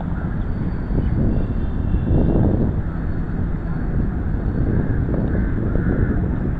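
Wind buffeting the camera's microphone, a loud low rumble with a stronger gust about two seconds in.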